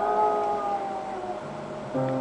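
A woman's long sung note sliding slowly downward and fading away within about a second, like a howl. A low instrument note comes in near the end.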